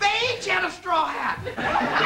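Laughter and voices break out suddenly, starting with a high-pitched voice that slides down in pitch, then many overlapping voices laughing.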